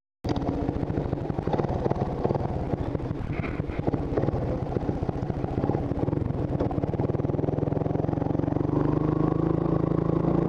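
Honda ATV's single-cylinder engine running while riding across the ice, with a fast, even pulsing. In the last few seconds the engine note steadies and rises slightly as it picks up speed.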